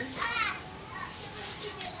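A child's voice in the background: one short high call about half a second in, then faint.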